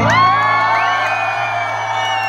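A live folk-pop band ends a song on a final held chord, the low note ringing out, while the audience whoops and cheers over it.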